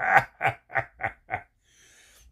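A man laughing: a run of about five short, rhythmic laugh bursts that grow shorter and fade out about a second and a half in.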